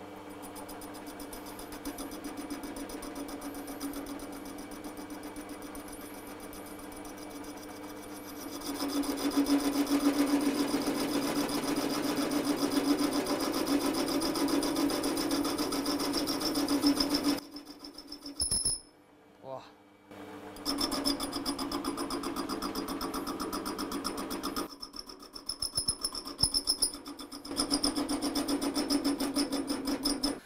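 Holzmann ED 750 FDQ metal lathe running while a parting tool is fed into a stainless-steel sleeve: a steady machine hum that grows louder about eight seconds in as the tool bites, cutting out briefly twice. The parting-off is not going well: the wrong tool for parting, and possibly set above or below centre height.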